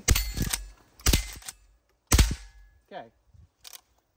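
A Henry Classic lever-action .22 rimfire rifle firing three shots about a second apart, the lever worked between shots. After the hits comes a light ringing from the steel targets.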